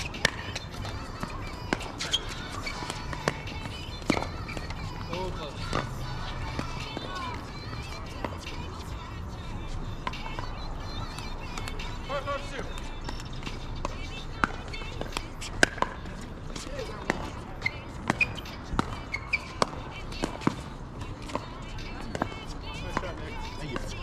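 Pickleball paddles hitting a plastic pickleball during a rally: sharp pops at irregular intervals, with more hits from neighbouring courts mixed in, over a steady low hum.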